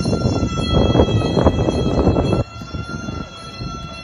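Muay Thai ring music for the wai kru, its reedy pi oboe holding one long high note. A loud rough rushing noise runs underneath and cuts off suddenly about two and a half seconds in.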